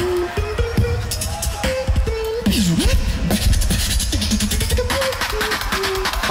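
Competitive beatboxing with deep kick sounds and fast clicking hi-hat and snare sounds under a hummed bass line held on steady notes. A pitch swoops down about two and a half seconds in.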